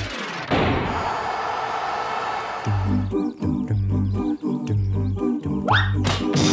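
Cartoon sound effects over background music: a falling whistle-like glide, then a sudden crash that rings on for about two seconds. Bouncy rhythmic music with a bass line then resumes, and a quick rising glide comes near the end.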